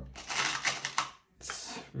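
Small steel M5 screws clattering as a hand rummages through a parts box: a rapid run of metallic clicks for about a second, then a brief pause and a softer rustle near the end.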